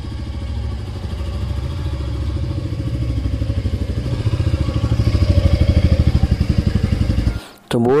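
Royal Enfield single-cylinder motorcycle engine running with a steady low beat as the bike rides up, growing louder as it approaches. The sound cuts off suddenly near the end.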